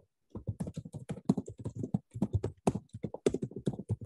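Typing on a computer keyboard: a quick, uneven run of key clicks, several a second, starting after a brief pause.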